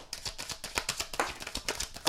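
A deck of tarot cards being shuffled by hand: a rapid, irregular run of soft card clicks and flicks.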